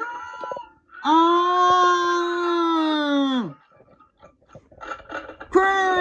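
A cartoon dog character's voice wailing: one long held cry that drops away at its end, then a second wail starting near the end, played through a screen's speaker.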